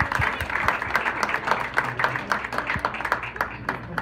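Audience applauding, many hands clapping at once.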